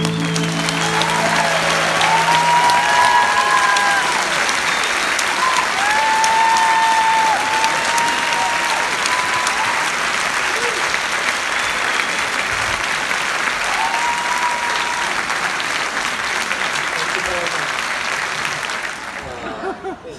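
Audience applauding and cheering after a song, with shouted voices rising above the clapping during the first half. The song's final chord dies away in the opening seconds, and the applause thins out near the end.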